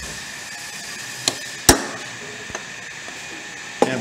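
A hammer strikes a punch set on a cast-iron Bridgeport mill yoke, marking the spot to drill for an oil line: a light tap a little past a second in, then one sharp blow, the loudest sound, just after it.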